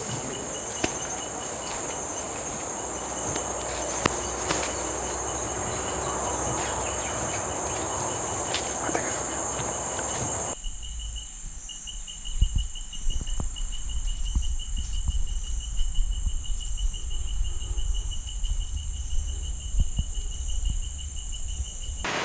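Forest insects shrilling: a steady high buzz with a faster, rapidly pulsing chirp below it. About halfway through the sound changes abruptly, and a low rumble with a few sharp knocks comes in under the insects.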